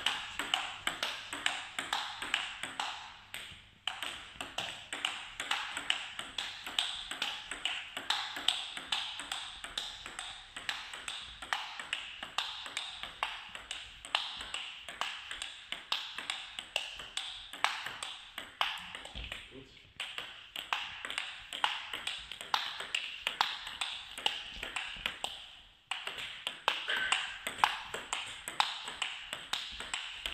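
Table tennis counter-hitting rally: a plastic ball clicking off the bats and the table in a quick, steady rhythm, one player's forehand hitting with a short-pimpled rubber (TSP Super Spin Pips). The rally stops briefly a few times and then resumes.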